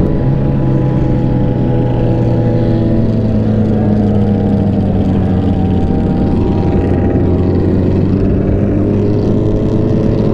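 Sportbike engine cruising at highway speed, a steady note that drifts slowly in pitch and rises a little near the end, with wind rushing over the bike.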